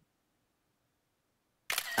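Near silence, then a man's voice starting near the end.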